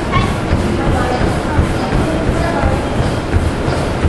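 Indistinct background voices over a loud, uneven low rumble.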